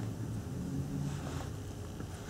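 Quiet room background with a faint, steady low hum and no distinct sound events.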